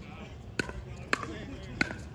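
A plastic pickleball popping three times, about half a second apart, over faint talk.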